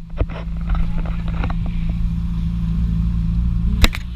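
A car engine drones steadily while driving, with road and wind noise over it. A few light knocks come in the first second and a half, and one sharp, loud knock comes near the end.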